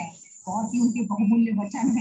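A woman speaking Hindi over a video call, with a short pause near the start, and a faint steady high-pitched tone behind her voice.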